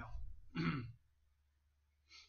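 A man clears his throat once, briefly, about half a second in, right after finishing a spoken word.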